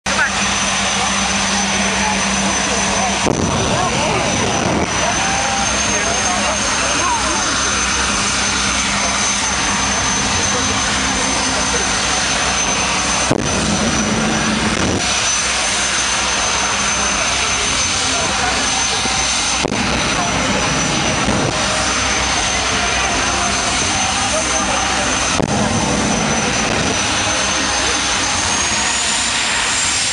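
Jet engine of the Predator jet car running loud and steady, its high turbine whine stepping up in pitch a few times and climbing near the end. Louder surges come roughly every six seconds.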